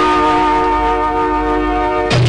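Film-song music holding one long, steady chord.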